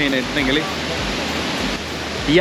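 Steady rushing roar of the Pliva waterfall, with a man's voice trailing off in the first half-second.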